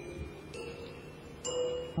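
Toy piano being played, its hammers striking tuned metal rods so that each note rings and slowly fades. A note carries over at the start, a new one is struck about half a second in, and another near the end.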